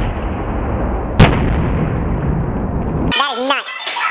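A steady noisy rumble broken by one sharp, loud bang about a second in, then people talking near the end.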